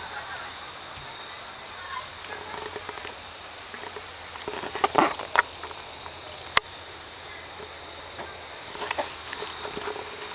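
Quiet night-time outdoor ambience: faint distant voices over a steady hiss, broken by a few short clicks and knocks, the sharpest a single click about two-thirds of the way through.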